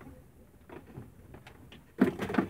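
Faint clicks and rustles of a mains plug and its cable being handled.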